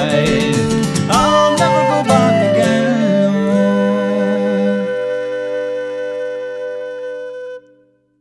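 Instrumental ending of a folk song on acoustic guitar with flute and fiddle: a few last strummed chords and melody notes, then a final chord held with a wavering high note, fading and stopping near the end.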